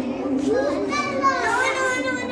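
Several young children talking and calling out at once, their high voices overlapping.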